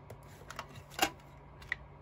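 A few short clicks and knocks as a clear plastic case of wooden alphabet stamps is handled and set down on a tabletop, the loudest about a second in.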